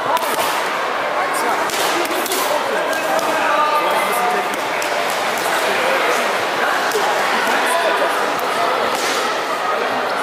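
Gloved punches and kicks smacking onto focus mitts during pad work: several sharp slaps at irregular intervals, the strongest a few in the first two and a half seconds and one near the end, over the steady babble of a crowd in a large sports hall.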